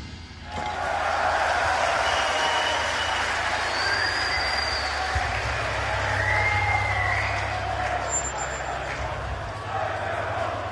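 Concert crowd cheering and shouting between songs, with a few whistles, over a steady low hum.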